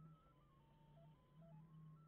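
Near silence, with a very faint melody of single electronic notes stepping up and down and repeating about every two seconds, over a faint steady low hum.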